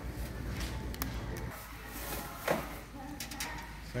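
Store background: a steady low hum that stops about a second and a half in, faint voices in the distance, and a few sharp clicks and knocks.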